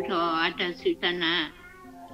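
A person's voice speaking over a video call for about a second and a half, then a short pause.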